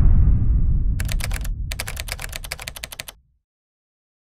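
Logo sound effect: a deep boom that fades away over about three seconds. From about a second in, a fast run of sharp ticks, about ten a second with a short break, plays over the fading boom.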